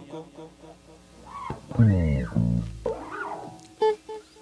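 Electric bass and electric guitar playing a few scattered notes, with a short falling bass run about two seconds in.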